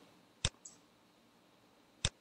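A single sharp mouse-button click about half a second in, followed closely by a fainter, softer tick; otherwise quiet room tone.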